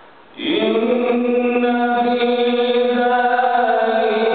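A man reciting the Quran in a melodic chant: after a brief pause, a long phrase with held, drawn-out notes begins about half a second in.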